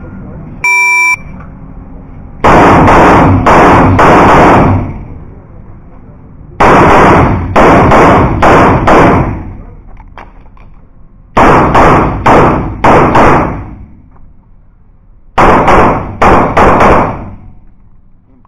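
A shot-timer start beep, then a CZ 75 Shadow pistol fired in four quick strings of about four shots each, roughly half a second between shots, echoing in an indoor range.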